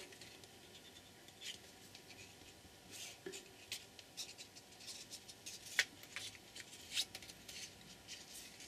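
Faint, scattered clicks and rustling of red-handled eyelet-setting pliers being squeezed and handled on a paper strip, with one sharper click a little before six seconds in.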